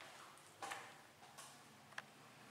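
Near silence: faint room tone with three short, faint clicks at uneven intervals.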